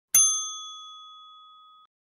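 Notification-bell sound effect: a single bright bell ding that rings and fades steadily, cut off shortly before the end.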